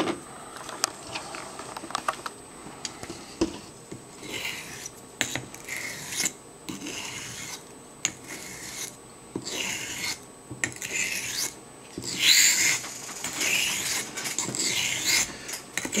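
A very old Wade and Butcher straight razor being honed on a Norton waterstone wet with slurry, to work out a jagged spot in the middle of the edge. A few light clicks come first. From about four seconds in, the blade is drawn back and forth across the stone in a series of short scraping strokes, the loudest near the end.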